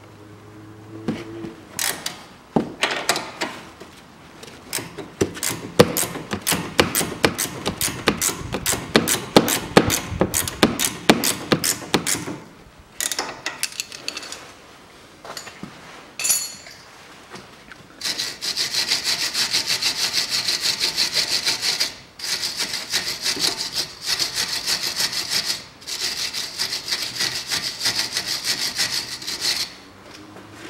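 Ratcheting wrench clicking in fast runs as a suspension nut on the strut is worked, with short pauses between runs.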